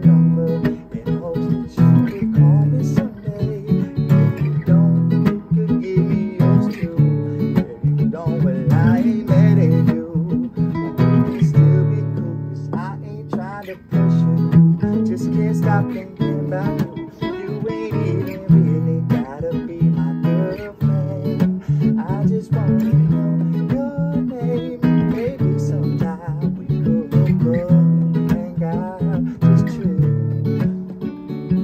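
Two acoustic guitars playing together in an instrumental passage of a song, dropping back briefly near the middle.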